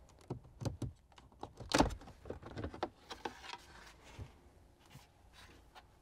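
Plastic side trim panel on a 5th-gen Toyota 4Runner's centre dash being pried off with a plastic trim removal tool: a series of sharp clicks and snaps as its press-in clips let go, the loudest about two seconds in.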